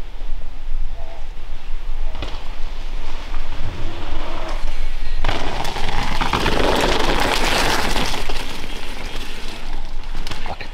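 Mountain bike tyres rolling and crunching over a dirt trail strewn with dry leaves. The noise swells loudest a little past the middle as the bike passes close, over a steady low rumble.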